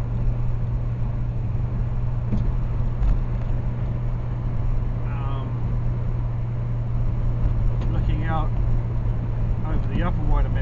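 Steady low drone of a car driving at motorway speed, heard from inside the cabin: engine and tyre hum with road noise.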